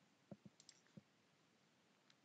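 Computer mouse button clicking: a few faint, short clicks in the first second, as the Save button is clicked.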